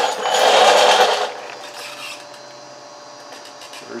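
A burst of fast metallic rattling lasting about a second, from work on the mower deck's belt and pulley hardware, then a faint steady hum.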